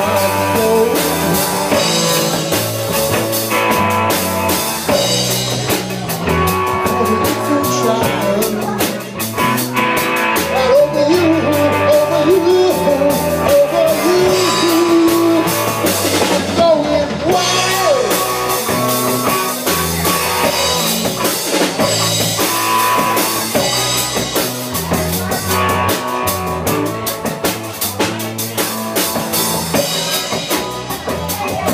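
Live rock band playing an instrumental stretch on drum kit and electric guitars, with a steady beat and a lead line of bending notes through the middle.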